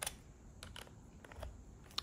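Faint, scattered small plastic clicks of a USB plug and cable being handled at a laptop's side port, about half a dozen over two seconds.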